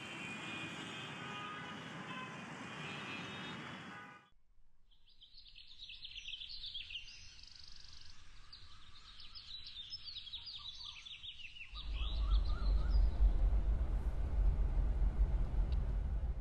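Busy road traffic noise for about four seconds, then a quieter street with many birds chirping. About twelve seconds in, a car engine starts running close by with a deep, steady rumble.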